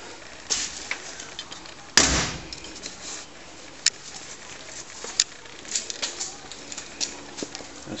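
Low background noise broken by a loud, short thump about two seconds in, then two sharp single clicks near four and five seconds.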